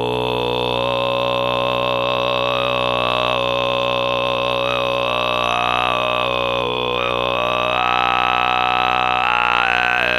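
Kargyraa throat singing: one steady, low sung drone with a dense stack of overtones, the upper overtones shifting in pitch like a slow melody above it. Near the end one overtone rises higher and holds for a moment.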